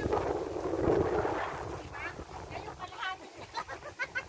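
Wind buffeting the phone's microphone for about the first two seconds, then a voice talking.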